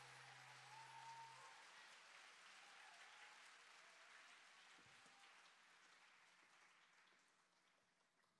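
Faint audience applause fading slowly away, while the last low held note from the band dies out about a second and a half in.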